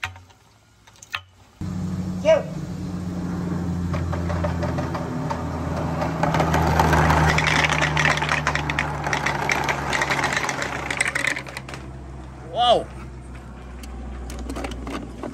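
A bunch of balls rolling and clattering down a long plastic rain gutter, starting suddenly about a second and a half in: a steady rumble with dense rattling that builds and then eases off near the end. Two short gliding squeaks cut in, one early and one near the end.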